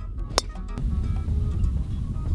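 A golf driver strikes the ball off the tee, one sharp crack less than half a second in, over background music.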